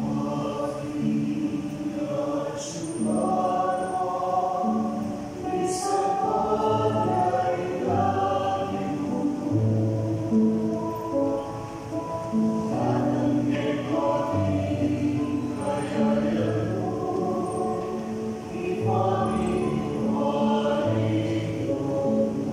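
Small mixed choir of men's and women's voices singing a devotional song in harmony, with several parts holding long notes that change together.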